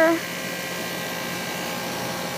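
Guardian 4-ton central air conditioner's outdoor unit running: a steady hum from its Bristol compressor under an even rush of air from the condenser fan.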